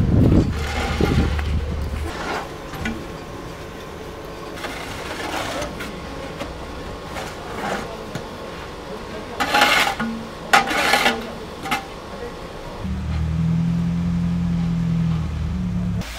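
Snow shovels scraping over slushy pavement in a few loud, short strokes, amid street noise, with a steady low engine hum near the end.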